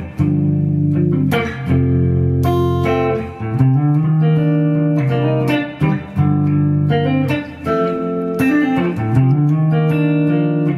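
Les Paul-style electric guitar playing R&B chords in B-flat: a looped chord progression with a triad walk-up, each chord picked and left ringing, changing every second or two.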